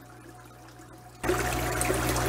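Paludarium waterfall splashing into the tank water, a steady trickle that comes in suddenly about a second in, much louder than the faint hum before it.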